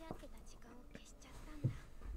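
Faint, low-volume speech with a soft, whisper-like quality: the anime's dialogue playing quietly beneath the reaction.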